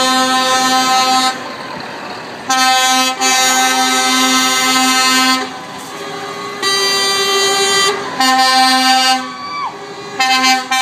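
Lorry air horns sounding a series of long, steady chord blasts with short pauses between, one blast about seven seconds in at a different pitch. The last blast sags in pitch as it cuts off.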